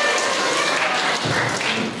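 Audience applauding in a large hall, the clapping dying down near the end.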